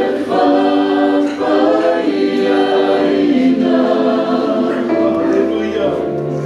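Music: a choir singing a Christian song, several voices holding sustained notes together.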